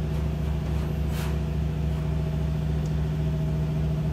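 Feeler VMP-40A CNC vertical machining center running through a demonstration program, giving a steady low machine hum with a few held tones. There is a brief hiss about a second in.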